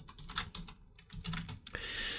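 Typing on a computer keyboard: a quick, uneven run of soft keystroke clicks.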